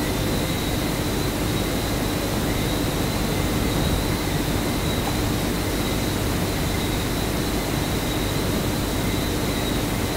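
Steady background noise, an even rushing hiss with a faint constant hum and whine under it, from a fan or air conditioner in the room or the microphone's own hiss.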